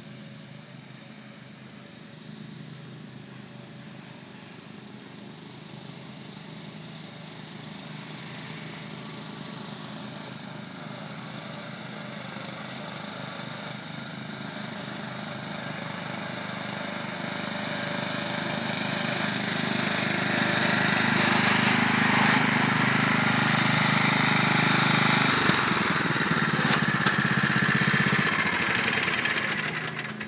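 Yard Machines riding lawn mower engine running steadily, growing louder over about twenty seconds as the mower drives toward the microphone, then staying loud as it pulls up close.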